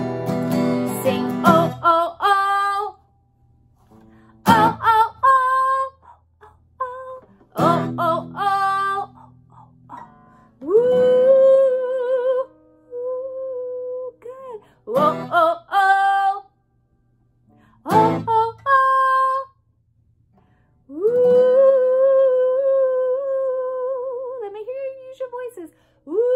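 Acoustic guitar played in single sharp strums every few seconds, alternating with a woman's voice singing long held notes that waver in pitch, with short silent pauses between phrases.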